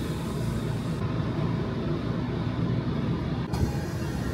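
Tokyo Metro Ginza Line subway train running, heard from inside the carriage as a steady low rumble.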